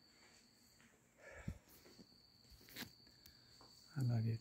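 Near silence: room tone with a faint steady high-pitched whine, a soft short rustle about a second and a half in and a faint sharp click just before the end.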